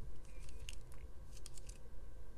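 LEGO plastic bricks clicking and scraping as the model is handled and a door piece is pressed into place: a scatter of small, sharp clicks.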